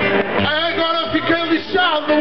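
A man's voice through a microphone and PA, with an acoustic guitar playing underneath.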